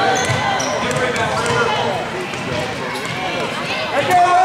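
Gym sound during a youth basketball game: many voices chattering and calling out, with a laugh at the start, and a basketball bouncing on the hardwood floor.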